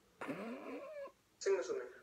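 A brief wavering vocal cry with a sliding pitch, then a voice starting to speak.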